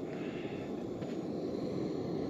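Camping stove burner hissing steadily as it heats a frying pan.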